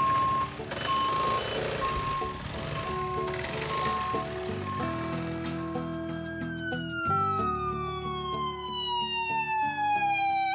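Ambulance siren wailing, its pitch falling slowly over the last few seconds, over background music with held notes. In the first half a high electronic beep repeats a little faster than once a second.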